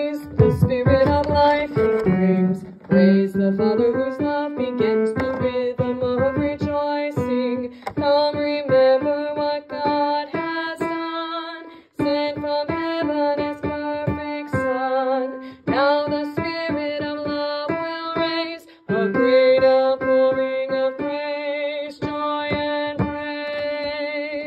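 Women's choir voices singing a cantata passage over piano accompaniment, phrases held with vibrato and broken by two brief pauses partway through.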